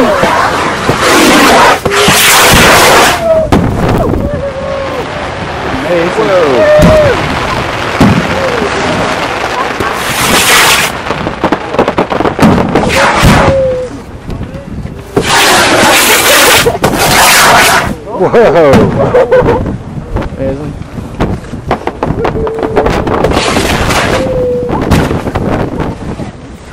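Fireworks going off at close range: loud bursts of bangs and crackle come again and again. Between the bursts, people whoop and cheer.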